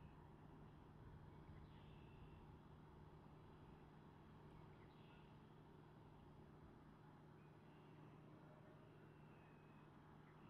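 Near silence: a faint steady low hum, with a few faint short high chirps spread through.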